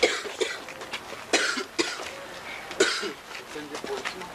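People's voices in short, sharp bursts, four of them over a few seconds, with brief voiced sounds between.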